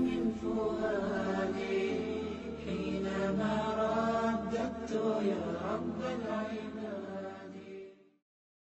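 Melodic vocal chanting, one sustained line gliding from note to note, fading out at the end.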